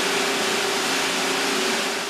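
Circular knitting machines running in a textile mill: a steady, even machine hiss with a constant hum under it.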